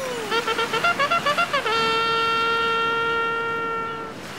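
A horn-like fanfare: a quick run of short notes at changing pitches, then one long held note.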